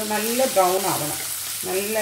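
Chopped onions sizzling in hot oil in a stainless steel saucepan, stirred with a spatula, with a woman's voice talking over it, pausing about halfway through.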